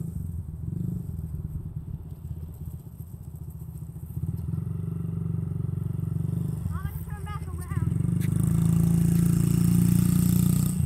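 A Honda 50cc dirt bike's small single-cylinder four-stroke engine runs as it is ridden. It eases off around three seconds in, then picks up again and is loudest near the end.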